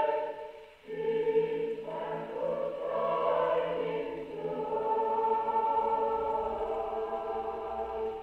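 Choir singing a hymn, played on a wind-up HMV 102 portable gramophone from a 78 rpm record that is a bit worn; the sound is muffled, with no treble. One phrase dies away just before a second in, the next enters, and its last held chord fades near the end.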